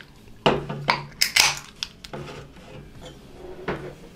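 Glass and aluminium beer can knocking and clinking as they are picked up and handled on a desk: a cluster of sharp knocks in the first second and a half, then a few lighter ones.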